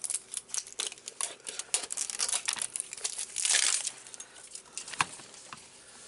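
Plastic wrap on a mini figure canister being torn along its tear strip and crinkled by hand, with many small crackles, a longer rip a little past halfway and a sharp click near the end.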